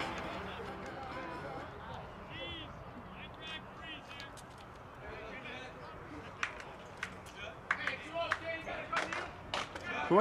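Outdoor baseball-field ambience: distant voices and chatter, with a scattering of sharp knocks and claps over the last few seconds. The tail of background music fades out at the start.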